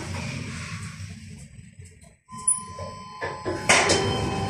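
Schindler 5400 lift car running between floors with a low rumble, then a steady electronic beep lasting about a second as it arrives at the floor. Clicks and a rush of noise follow near the end as the doors begin to open.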